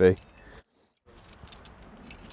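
Metal climbing gear, cams and carabiners, clinking faintly as it is handled and racked on a harness gear loop, with a brief dead silence about half a second in.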